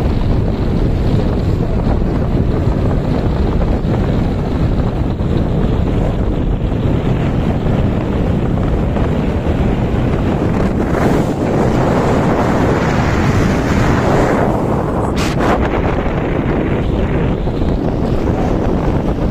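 Wind rumbling on the microphone of a moving car, mixed with road noise, steady and loud, swelling a little about two-thirds of the way through.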